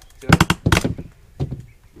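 Metal pry tool knocking and prying at wooden trim, with a quick run of sharp cracks and knocks about a third of a second in, then two lighter knocks.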